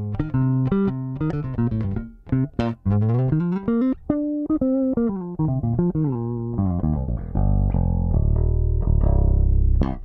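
Sire V7 Vintage five-string electric bass played fingerstyle, unaccompanied: a run of separate plucked notes, with a slide up and back down near the middle. Toward the end it turns into a denser, sustained low sound.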